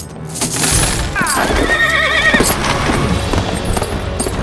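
A horse whinnying: one long, wavering neigh starting about a second in, over galloping hoofbeats, with film music underneath.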